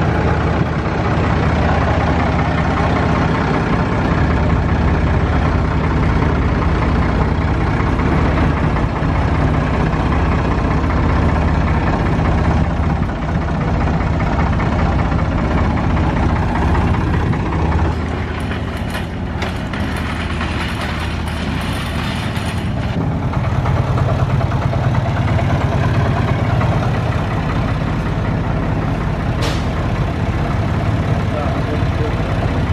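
Rough-terrain forklift's engine running steadily while it carries a pickup bed, with a couple of short knocks in the second half.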